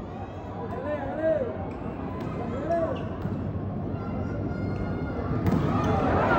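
Volleyball arena crowd with scattered shouts, and a volleyball bounced a few times on the court floor as the server readies his serve. The crowd gets louder near the end as the serve goes over.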